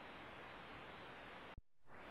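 Near silence: faint, steady hiss of room tone, broken by a brief click and a moment of dead silence about one and a half seconds in.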